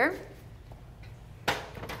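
A single sharp knock about one and a half seconds in, followed by a couple of fainter knocks, over quiet room tone: handling noise as the fill hose and step stool are moved at the aquarium.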